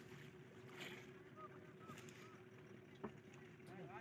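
Faint, steady low hum of a small boat's outboard motor running slowly, with a few faint distant calls in the middle and a single click about three seconds in.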